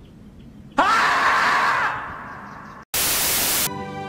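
A loud scream from the screaming-marmot meme starts suddenly about a second in and fades away over about two seconds. It is followed by a short burst of loud static hiss.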